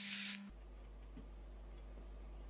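Hiss of air drawn through an e-cigarette's rebuildable dripping atomizer as its coil fires, with a low steady tone under it, cutting off sharply about half a second in. After that only a faint low hum.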